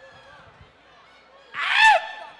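Faint crowd murmur, then about a second and a half in a loud, high-pitched shout from one person that falls in pitch at the end.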